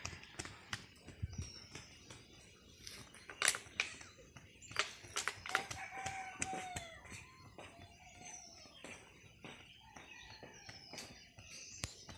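A bird calling: two long, arched calls about halfway through, over scattered short sharp taps and clicks.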